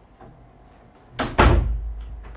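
A door banging: a sudden loud double thump a little over a second in, fading quickly.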